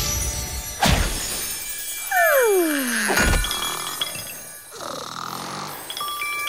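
Cartoon sound effects over light background music: a sharp hit about a second in, then a falling whistle-like glide that ends in a thud a little after three seconds.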